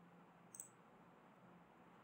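Near silence with one faint computer mouse click about half a second in.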